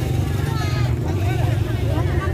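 Motor scooter engines running at low speed close by, a steady low hum, with many people talking at once over it.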